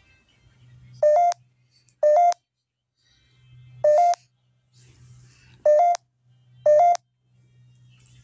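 Five short electronic beeps at uneven intervals, each a quick two-note tone that steps up in pitch, with a faint low hum in between.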